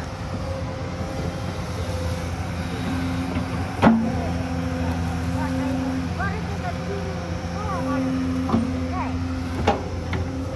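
Hyundai crawler excavator's diesel engine running steadily under hydraulic load, with a whine that comes and goes as the bucket digs into the earth bank. Sharp knocks from the bucket, the loudest about four seconds in and two smaller ones near the end.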